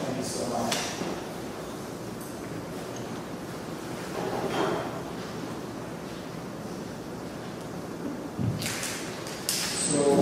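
Quiet hall with a few brief, soft spoken words; near the end, sheets of paper rustle as they are handled.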